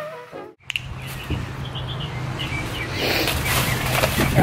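Brass music cuts off about half a second in. Outdoor ambience follows, with birds chirping and a steady low hum.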